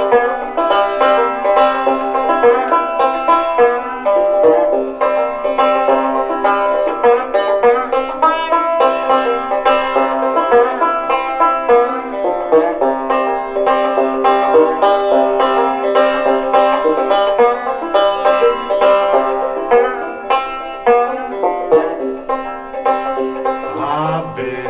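Open-back five-string banjo played solo in clawhammer style, a steady, even run of plucked notes over a ringing drone, as an instrumental break between verses.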